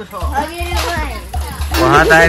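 Voices talking over background music with a steady low beat.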